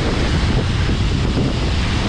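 Steady rush of muddy floodwater pouring over a small concrete weir's spillway and splashing onto the rocks below, with wind buffeting the microphone.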